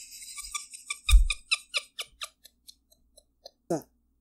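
A woman's breathy laughter: a quick run of short puffs that slows and fades away, with a low thump about a second in and a short falling voiced sound near the end.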